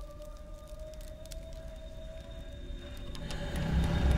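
Eerie horror-score drone: a high held tone that wavers slightly, over faint scattered crackles. A deep low rumble swells up over the last second.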